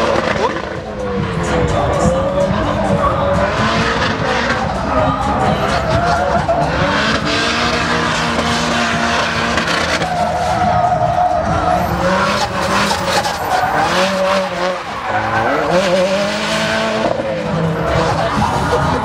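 A drift car's engine revving hard, its pitch rising and falling again and again, with the rear tyres squealing and skidding as it slides sideways.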